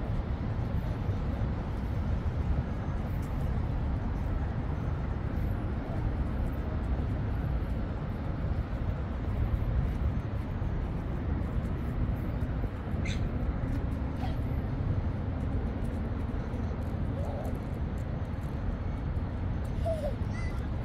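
Steady low rumble of outdoor city ambience, with a brief high sound about two-thirds of the way through.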